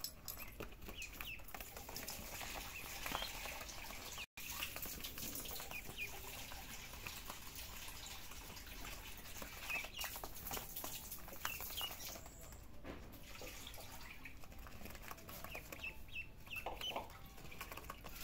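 Ducklings peeping in short, high chirps scattered through, over light scratching and pattering of small feet and paws on the pool's vinyl floor.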